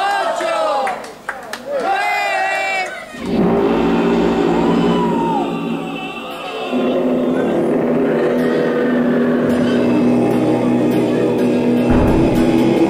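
Wrestling crowd shouting for about three seconds, then wrestler entrance music cuts in suddenly over the arena's speakers and keeps playing, with long sustained tones.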